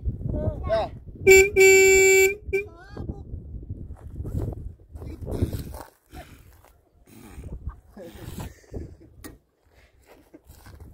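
Nissan pickup truck's horn sounding a short toot and then a longer one of about a second, a steady single-pitched blare, with voices talking around it.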